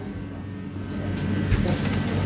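Steady low hum in a commercial kitchen, with a single sharp metallic knock about one and a half seconds in as the metal pizza peel carrying the pizza is set down on the stainless-steel counter.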